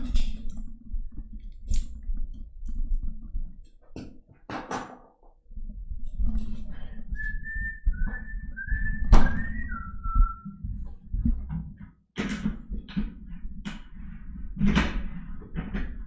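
Handling noise from a studio microphone being moved on its boom arm: scattered knocks, clicks and low rumble. About halfway through comes a short run of five or six whistled notes, stepping down in pitch.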